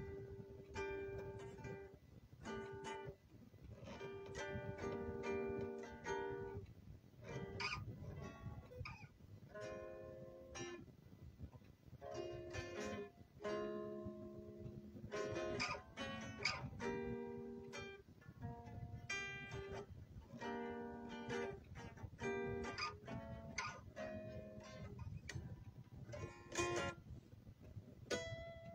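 Solo guitar picked and plucked: single notes and short chords that ring out and fade, played in short phrases with brief pauses between them.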